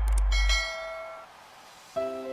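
Subscribe-button animation sound effects: a couple of quick mouse clicks, then a bright bell chime that rings and fades away within about a second. A low music drone dies out under the first clicks.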